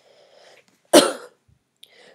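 A single sharp cough from a woman about a second in.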